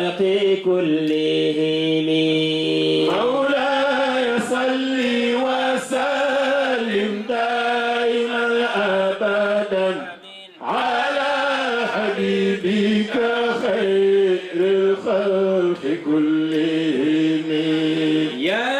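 A man chanting Islamic devotional verses in a sung recitation: a long held note at first, then flowing ornamented phrases, with a brief pause for breath about ten seconds in.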